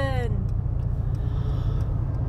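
Steady low rumble of a car heard from inside its cabin while it is being driven. The tail of a drawn-out woman's voice fades out in the first moments.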